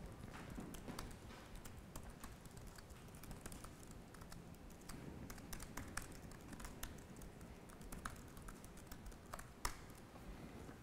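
Faint typing on a computer keyboard: irregular key clicks throughout, with a sharper click near the end.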